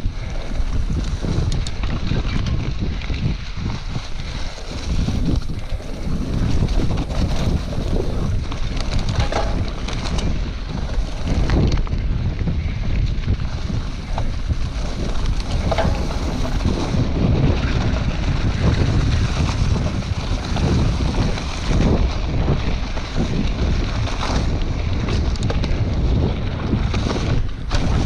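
Wind buffeting a GoPro Hero 2018's microphone as a Scott Scale 950 mountain bike rolls fast along a leaf-strewn dirt trail. Under the wind are the tyres' rumble and frequent knocks and rattles from the bike over bumps.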